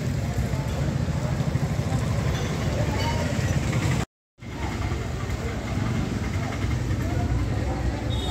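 Outdoor street ambience: a steady low rumble, with a faint murmur of voices and passing traffic. It drops out into complete silence for a moment about four seconds in.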